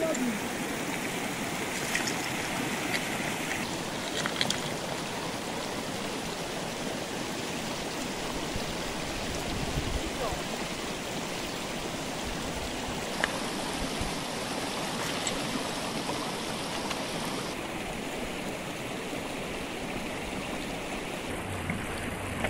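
Steady rush of rain runoff flowing across a washed-out gravel road, mixed with falling rain.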